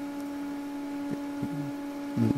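A steady electrical hum: one low tone with fainter overtones above it, unchanging, with a couple of faint short low sounds just past the middle.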